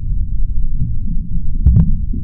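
Low, muffled throbbing soundtrack like a heartbeat or blood rushing, with all its sound deep and dull. Two short, sharp knocks come close together near the end.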